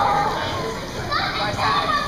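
Young children's high-pitched voices chattering and calling out, loudest in the second half.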